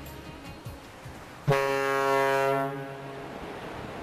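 A ferry's horn sounds one blast about halfway through, starting suddenly, holding one steady note for just over a second, then dying away. A background of wind and water noise runs underneath.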